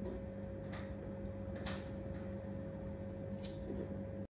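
A person drinking a thick milkshake from a plastic blender cup, with a few faint short sips or mouth clicks, over a steady low electrical hum.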